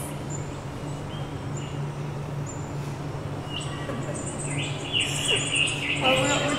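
Birds chirping: short high calls about once a second, then a denser run of chirping in the last second and a half, over a steady low hum.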